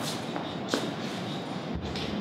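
Hall room tone with a couple of light clicks, then a dull low thump near the end as a microphone stand is handled.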